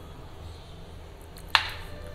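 A kitchen knife slicing a bar of soap base, with one sharp knock of the blade on the plastic cutting board about one and a half seconds in, over a low steady hum.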